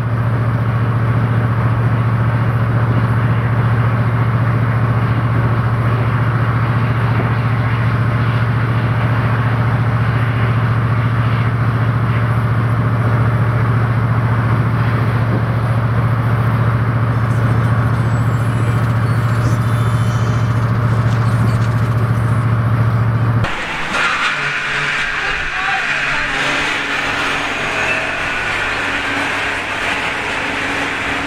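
Steady low drone of a van driving at an even speed, engine and road noise heard from inside the cabin. It cuts off abruptly about 23 seconds in, replaced by quieter outdoor street sound with some voices.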